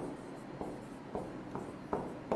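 Marker pen writing on a whiteboard: a few short, faint strokes as the figures are drawn.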